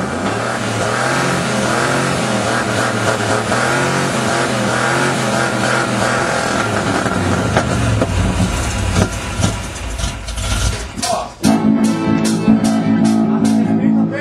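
A band's music plays, with a low rumble coming through about eight to eleven seconds in. Near the end a louder passage starts from electric guitars, accordion and drum kit, with sharp drum hits.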